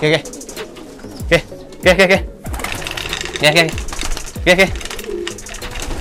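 Domestic pigeons cooing and wings fluttering as the birds come down to a man's hand, over his short repeated calls of "oke" coaxing them in.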